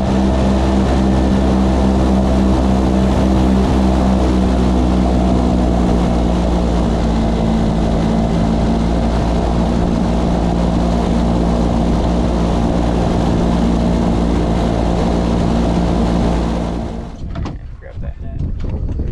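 Boat engine running at a steady cruising speed as the boat skims across shallow flats, a constant drone. It cuts off abruptly near the end.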